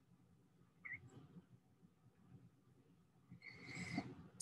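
Near silence: room tone, with one faint, brief high-pitched squeak about a second in and a faint rising noise near the end.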